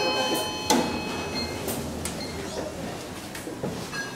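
Schindler 5400 elevator's arrival chime ringing out in several held tones, then a sharp clunk under a second in as the landing doors start to move, followed by the steady rumble of the doors sliding open, with a few light clicks.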